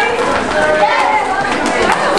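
A group of people's voices talking and calling out over one another.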